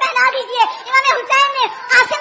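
Speech only: a woman speaking in a very high-pitched voice, words following one another with no pause.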